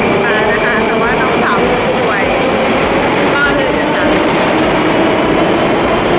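Metro train in an underground station: a loud, steady rumble with a steady hum, echoing off the station walls.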